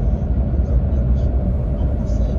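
Steady low rumble of a car's engine and tyres heard from inside the cabin while cruising on a highway at about 90 km/h.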